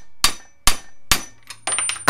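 Hammer blows driving an upper ball joint into a steering knuckle clamped in a bench vise, struck through a stack of sleeves and adapters. There are three sharp metal strikes about half a second apart, then a quick run of lighter clinks near the end.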